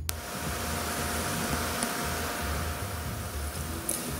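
Steady hiss, like a recording's background noise, switching on with a click and carrying a faint steady tone, over a low irregular pulsing.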